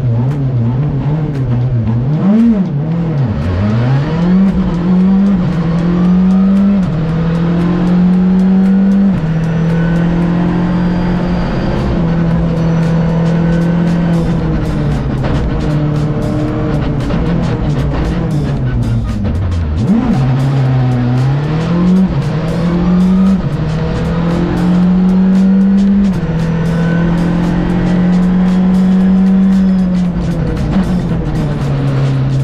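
Rally car engine heard from inside the cockpit, revving as the car pulls away and then climbing and dropping in pitch through gear changes. Short sharp ticks run throughout.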